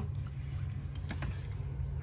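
A steady low hum with a couple of faint clicks about a second in.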